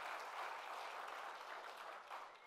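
Audience applause, slowly fading away.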